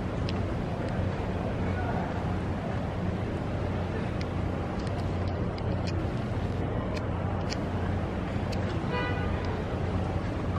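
Steady urban street noise: a traffic rumble with a constant low hum, broken by a few short sharp clicks. About nine seconds in there is a brief pitched call or tone.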